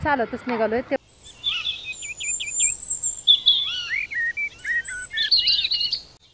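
Birds singing and chirping: a quick run of repeated short chirps, a thin high whistle held for about a second, then varied warbling calls that grow busier near the end.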